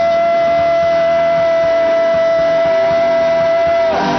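Live gospel worship music: one long note held steadily over a light drum beat, breaking off just before the end.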